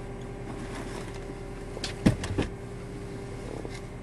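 Truck engine idling while it warms up, a steady hum heard from inside the cab. A few quick knocks come about two seconds in.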